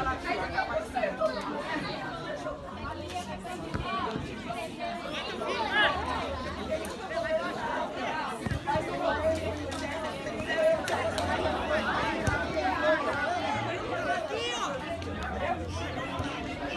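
Many voices of players and onlookers calling out over one another on a football pitch, with a few short knocks mixed in.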